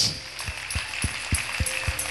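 Church praise music with a steady low drum beat, about three beats a second. A held note joins about halfway through, and some of the congregation clap along.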